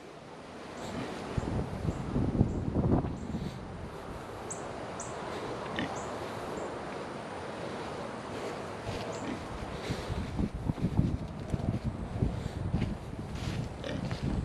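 Footsteps crunching on gravel and wood chips as someone walks, with wind rushing over the microphone. The steps are heaviest early on and again near the end.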